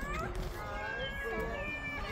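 High-pitched squealing vocal sounds from a young child, several short cries gliding up and down in pitch, with one longer held note near the end.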